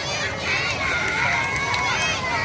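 A group of children shouting and cheering, several high voices calling over one another with long held calls.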